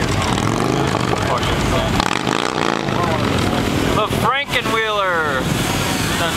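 Quad ATV engines running at the burnout pad, with one revving up and falling back about four to five seconds in. People talk over the engine noise.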